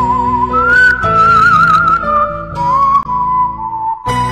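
Slow, sad background music: a high, pure-toned melody with vibrato, rising about half a second in and settling lower near the end, over held chords.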